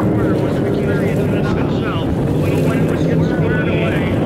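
Vintage racing hydroplane engines running steadily at speed, a continuous loud drone.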